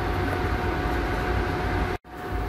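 Portable electric cooktop heating a large stainless pot of milk, its cooling fan and electronics giving a steady hum with a thin high whine over it. The sound cuts off abruptly at the end.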